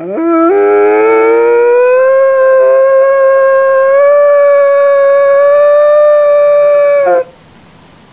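A single long canine howl that rises in pitch over the first two seconds, holds steady, and cuts off suddenly about seven seconds in.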